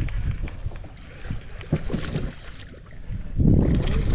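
Wind buffeting the microphone over open water during a fish fight from a boat, with a louder rush of noise in the last half second.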